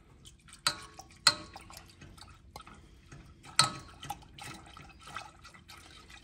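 Milk being poured from a glass measuring cup into a stainless steel saucepan while a whisk stirs it. The pour and splashing are quiet, with a few sharp ticks: two about a second in and a louder one past three and a half seconds.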